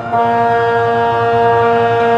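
Closing 'Amen' of a choral anthem with piano: a loud chord enters just after a brief dip and is held steady, a bass part-practice track with the bass line brought forward.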